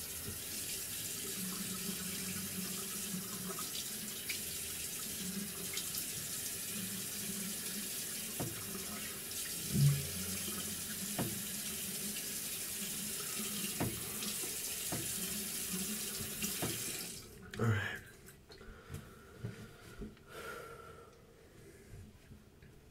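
Bathroom sink tap running water steadily, shut off suddenly about three quarters of the way through, then a few light knocks and clicks.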